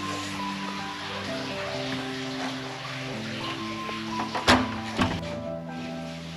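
Background music with held notes, and two sharp clicks about half a second apart near the end: the hotel room door's lock and handle being worked as the door swings open.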